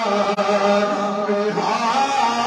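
A man singing a naat, an Urdu devotional poem, solo into a microphone, drawing out long held notes that bend and shift in pitch.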